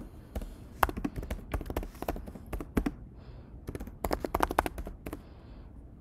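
Typing on a computer keyboard: rapid key clicks in quick runs, with a short lull near the middle.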